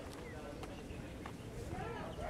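Busy street ambience: a low traffic rumble with a few footstep-like clicks, and wavering voices or calls coming in near the end.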